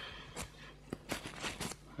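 Kitchen paper towel rustling as a metal mixing tool is wiped clean of wet acrylic paste, in a handful of short crinkling rustles, most of them in the second half.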